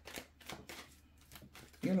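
A deck of cards being shuffled by hand: a quick, irregular run of soft flicks and taps as the cards slide from hand to hand.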